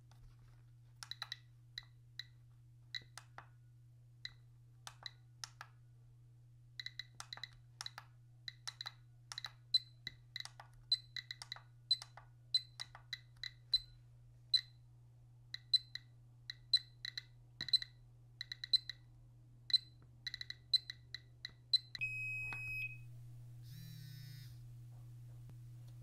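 GQ GMC-500+ Geiger counter beeping once for each detected count: short, irregular clicks at a random rate, a few a second, coming faster after the first few seconds as it reads about 150 to 185 counts per minute off metallic uranium. Near the end there is one short steady electronic beep, then a faint rustle.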